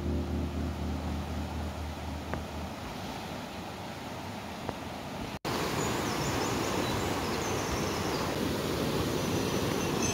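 Mountain stream rushing over rocks and small rapids in a steady rush of water, a little louder after a brief cut about halfway through. Background music fades out in the first couple of seconds.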